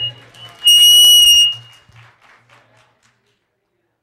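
A loud, high-pitched squeal of microphone feedback from a handheld mic, held for about a second starting about half a second in, over congregational applause that dies away by about three seconds.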